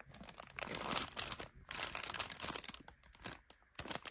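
Plastic zip-top bag crinkling as it is handled and turned in the hand, in two longer stretches of rustling from about half a second in to nearly three seconds, then lighter rustles near the end.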